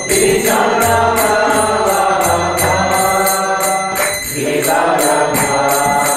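A man singing a devotional Hindu mantra chant in long, drawn-out notes, with small hand cymbals (kartals) struck in a steady beat about three times a second.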